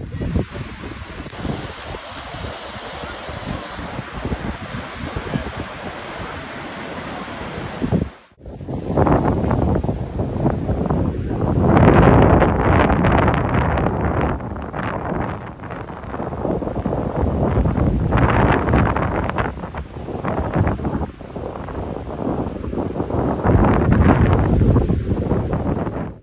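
Ocean surf washing onto a beach, a steady rush of waves. After a cut about eight seconds in, the waves are louder, with wind buffeting the microphone in uneven gusts.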